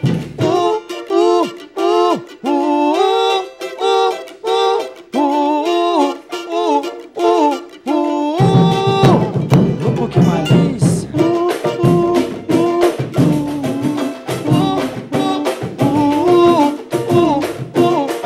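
Pagode group playing live: a sung melody over cavaquinho and banjo with the low drums out for the first eight seconds or so, then the surdo and the rest of the percussion come back in and the full band plays on.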